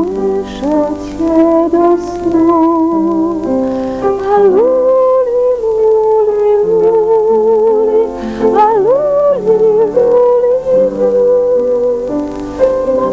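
A woman singing a slow lullaby to piano accompaniment, her long held notes wavering in a vibrato over the steady chords below.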